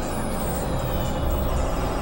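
Dense experimental electronic noise music: several music tracks layered at once and processed into a steady wall of drones. A heavy low rumble sits under many held tones and wavering high tones, with no break.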